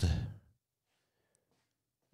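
A man's drawn-out word trails off into a breathy sigh about half a second in, followed by near silence for the rest.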